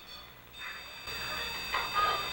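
An electronic alarm tone from a REM-Pod comes on about a second in and holds steady and high-pitched. The investigators take it as a spirit answering their request to say goodbye.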